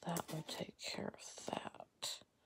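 A woman's voice whispering or muttering under her breath in short broken bursts, too quiet for the words to be made out.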